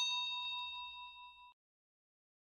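A single bell-like ding sound effect, as used for tapping a subscribe notification bell, that rings with a few clear high tones and fades away over about a second and a half.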